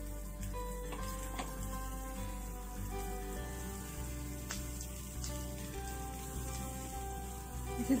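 Background music with held notes and a steady bass, over the faint sizzle of potato patties shallow-frying in oil on a flat pan.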